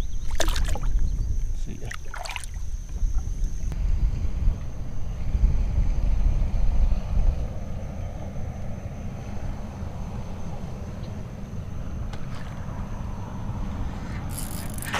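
Wind rumbling on an action-camera microphone over water noise around a kayak, with a few short sharp sounds in the first three seconds. A thin steady insect buzz fades out about four seconds in.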